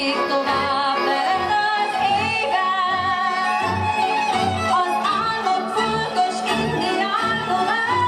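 A woman singing a held, gliding melody, accompanied by a folk band, with a double bass plucking low notes about twice a second underneath.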